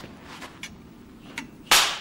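A film clapperboard is snapped shut once, a single sharp clack near the end. It marks the take so that picture and sound can be synced.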